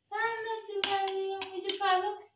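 A baby's voice making long, drawn-out, steady high 'aaah' sounds, with a few sharp taps about a second in and again near the end.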